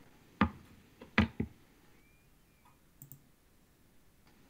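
Computer mouse clicks: three sharp clicks, one about half a second in and two in quick succession a little after one second in, with a faint one near the end.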